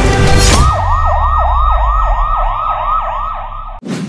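An electronic siren in yelp mode: rapid up-and-down pitch sweeps, about three a second, over a deep low rumble. It starts as music cuts off about half a second in and ends with a short whoosh near the end.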